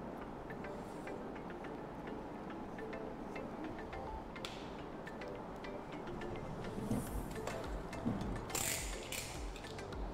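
Faint background music with a steady low bed, and a few light clicks and soft brushing sounds of hands handling small pieces on a work surface.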